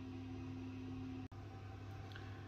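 Steady background hum with a few constant tones under a faint even hiss, broken by a very short dropout a little over a second in.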